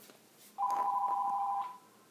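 Electronic two-note horn of a toy train set, sounded once for about a second.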